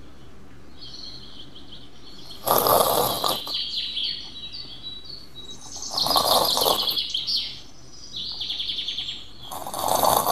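Songbirds chirping steadily as background ambience, broken three times by a woman's breathy sobs.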